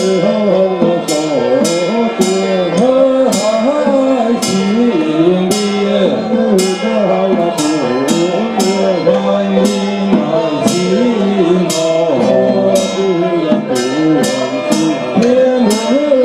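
Taoist ritual music: a wavering, ornamented melody over sharp metal percussion strikes that come roughly every half second to second.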